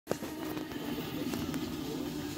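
Steady helicopter engine and rotor drone from a film soundtrack, heard through a television's speakers, with a few short clicks over it.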